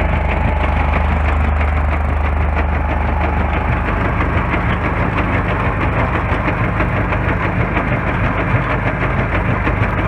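Dryblower running on alluvial gravel: a steady mechanical drone from its drive and blower with dense rattling of gravel passing through the machine. The strongest low part of the drone drops away about four seconds in.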